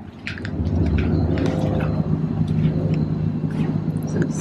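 Steady low rumble of road traffic with an engine-like hum, coming up about half a second in and holding level, with a few light clicks of handling on top.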